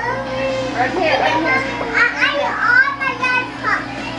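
Children's voices chattering and calling, with pitch rising and falling, over the steady hum of electric hair clippers.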